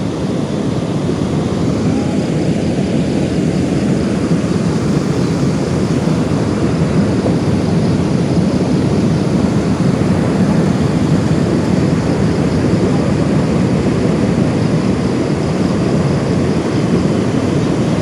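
Steady low rush of water flowing through the dam channel, an even noise with no breaks.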